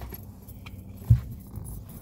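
Rustling and small jingling clicks of someone rummaging about in a car seat, with one short dull thump about halfway through.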